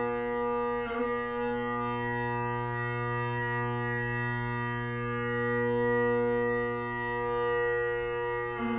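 Great Highland bagpipe sounding one steady, unchanging chord with its drones droning, struck in and held before the tune begins; a brief break in the sound about a second in.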